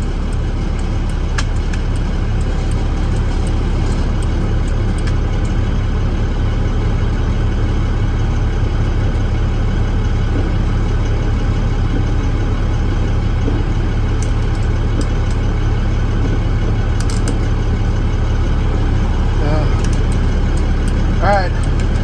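Truck engine idling steadily with a low rumble, while a few faint clicks come from the work on the turn signal switch wiring.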